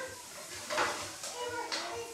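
Kitchen sponge scrubbed across a wooden table top in short strokes, making a rough rubbing noise that swells about a second in and again briefly near the end.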